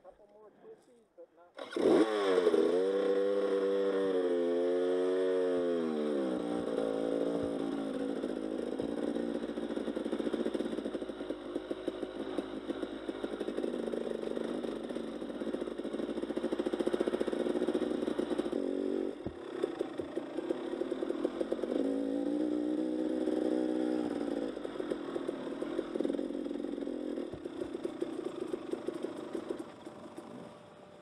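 Enduro dirt bike engine heard from the rider's helmet camera. It comes in suddenly about two seconds in, revs up and down for several seconds, then runs steadily at low trail speed, with another spell of rising and falling revs past the middle.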